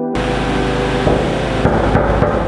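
Loud, even rushing noise from a handheld camera being moved, with a few light knocks in the second half; it starts and stops abruptly.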